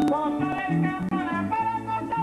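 Live Venezuelan llanero music: a man sings into a microphone, a held, wavering line, over harp and plucked strings with stepping bass notes.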